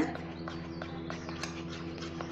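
Metal spoon clicking lightly and irregularly against a stainless-steel bowl while stirring food colouring into cake batter.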